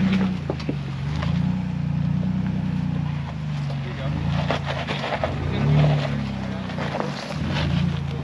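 Ford Bronco's engine working in low gear as the truck crawls up a rock ledge, its pitch rising and falling several times as the throttle is fed in and eased off, with occasional light clicks and knocks.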